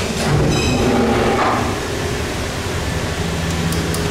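Old Westinghouse traction freight elevator running with a steady mechanical rumble. About half a second in there is a brief high squeal, and a steady low hum sets in near the end.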